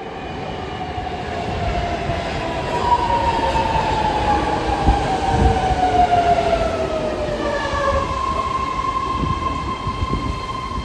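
Ride noise inside a moving BART Legacy Fleet car: the steady rumble of the running train. From about three seconds in, several high whining tones glide slowly down in pitch, and a steady high whine sets in near the end.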